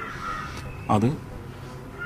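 A crow cawing in the background during a pause in a man's speech, with one short spoken word about a second in.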